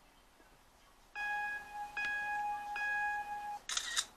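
Mac Photo Booth countdown: three beep tones in a row, the first about a second in and each running into the next, then the camera shutter sound near the end as the picture is taken.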